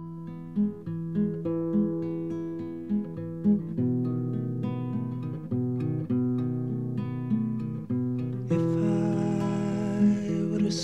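Acoustic guitar playing a gentle plucked intro, single notes ringing over a repeating low figure. Near the end the sound fills out with a brighter layer.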